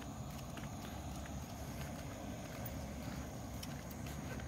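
Low, steady rumble of handling noise on a phone microphone as it is carried while walking, with a few faint scattered clicks.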